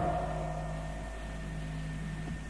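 Steady electrical hum with several fixed tones over a faint even hiss: the background noise of the recording in a pause between spoken phrases.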